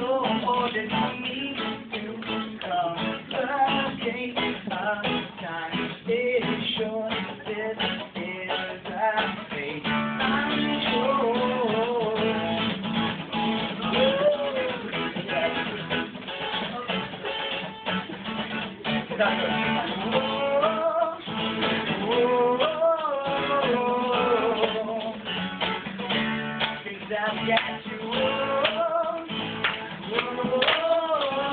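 Acoustic guitar strummed steadily, with a man's voice singing over it from about ten seconds in. The sound is thin, with no high end.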